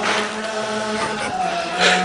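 Chant-like voices holding steady, droning notes, with a short rush of noise near the end.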